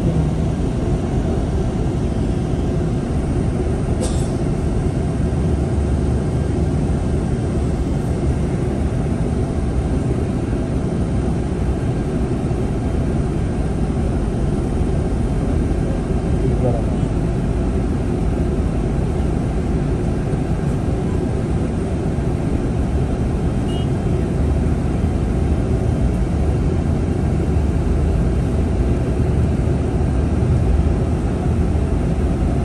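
Bus driving along a highway, heard from inside the passenger cabin: a steady low rumble of engine and road noise.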